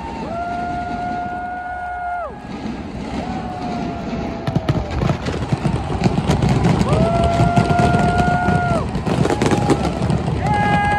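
Stadium pyrotechnics: long steady whistles from rising fireworks, about four, each dropping in pitch as it ends, over crowd noise. From about halfway a dense crackle of bangs comes in and the sound grows louder.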